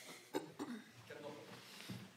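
A cough in a quiet hall, a short sharp hack about a third of a second in with a smaller one after it, followed by faint murmured voices.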